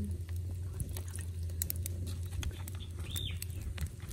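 Outdoor background with a steady low hum, scattered light ticks, and one short arched chirp about three seconds in.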